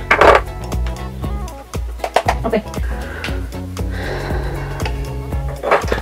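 Background music with steady bass notes, over soft scrapes and a few clicks of a plastic sculpting tool working damp clay on a toy pottery wheel.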